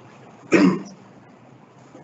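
A single short cough, one throat-clearing burst about half a second in, over faint room tone.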